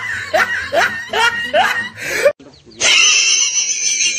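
A person laughing in a run of short rising whoops, about two or three a second, that cuts off abruptly about halfway through. After a brief pause, high reedy music starts near the end.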